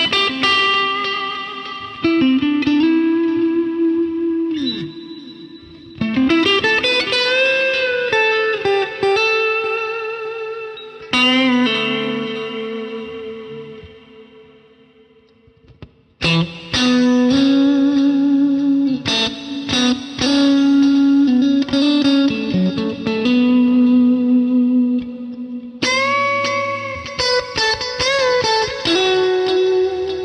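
G&L Tribute Legacy electric guitar with single-coil pickups, played through a Fender combo amp with an ambient effect: chords struck every few seconds and left to ring out in long fades, with melody notes and string bends between them.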